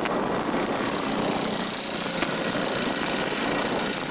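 Steady running noise of a moving road vehicle heard from on board: engine and road noise at an even level throughout.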